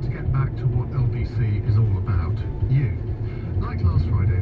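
A talk-radio presenter speaking without a break, over the low, steady rumble of a car's engine and tyres inside the moving car.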